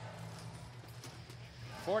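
Arena ambience from a robotics competition field: a steady low hum with a few faint knocks and clatter as the robots drive and bump about. The commentator's voice returns near the end.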